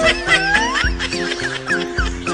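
Upbeat background music with a steady beat, with a gliding cry rising and falling over it about half a second in.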